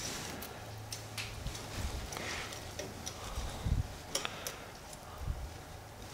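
Faint, irregular clicks and light rustling of bonsai wire being handled and fixed to a spruce's jin as a guy wire, over a low steady hum.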